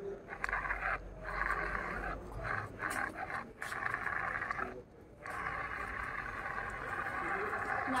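Small plastic DC gear motors of a two-wheeled Arduino robot car whirring as it drives and turns, cutting out briefly several times and then running steadily for the last few seconds.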